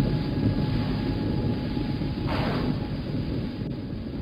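A deep, steady rumble with a faint held tone above it, and a single falling whoosh about two and a half seconds in.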